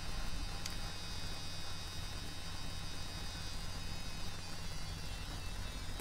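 Steady low electrical hum, mains hum, with faint hiss and a thin high whine in the recording. One small click comes under a second in.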